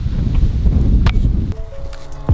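Wind buffeting the microphone as a loud low rumble, giving way about one and a half seconds in to background music with held notes and a beat.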